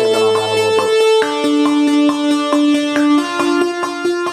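Synthesizer melody played back through Logic Pro's arpeggiator, its notes changing several times a second over longer held lower notes.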